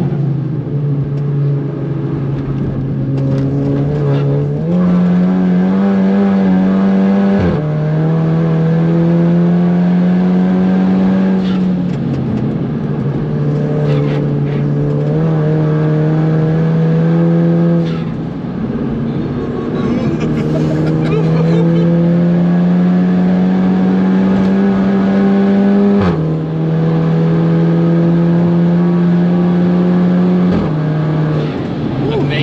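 In-cabin sound of a modified VW Caddy's Audi S3 turbocharged 2.0-litre four-cylinder TFSI engine pulling hard at high revs. The note climbs slowly in pitch under full throttle and drops suddenly at each upshift, about three times, with one sudden jump up in pitch early on.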